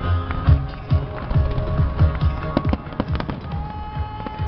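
A fireworks display bursting in many quick bangs and crackles, with deep booms among them, while music plays along with it.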